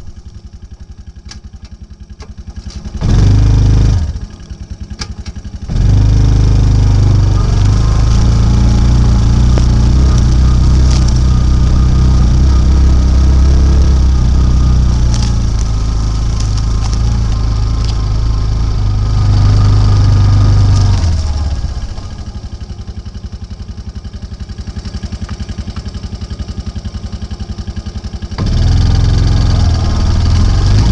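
ATV engine running under changing throttle. It is lower for the first few seconds, with two short loud spells about three and five seconds in. It is held loud from about six seconds to about twenty-one seconds, eased off for several seconds, then opened up again near the end.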